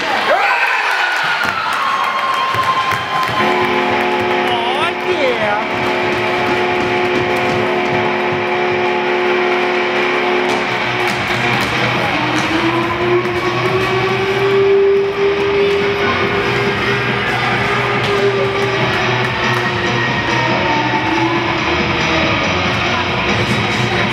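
Recorded music over an ice rink's public-address system during a stoppage in play, with spectators talking. A chord is held for several seconds, then a long sustained note takes over in the second half.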